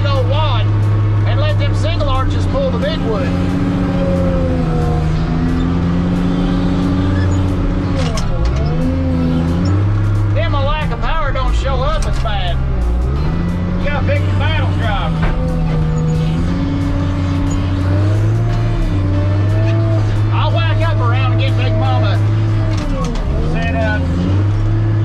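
Skidder's diesel engine running under load in the cab, its pitch dipping and recovering a few times, under music with a singing voice.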